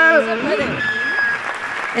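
Audience applauding at the end of a song, the last held note stopping with a falling slide just as the clapping takes over.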